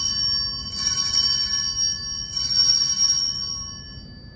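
Altar bells rung at the elevation of the chalice, signalling the consecration. The ringing from a strike just before carries on, the bells are struck twice more, under a second and about two and a half seconds in, and each time they ring out with long clear tones that fade near the end.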